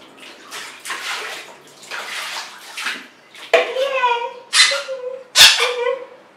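Water poured from a mug splashing over a baby's head into a plastic baby tub, then a squeezed rubber duck squeaking about three times in the second half.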